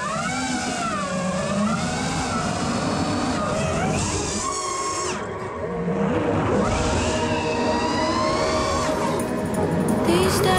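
FPV quadcopter's brushless motors and propellers whining, the pitch swooping up and down over and over as the throttle is pushed and cut, with a steep climb about four and a half seconds in.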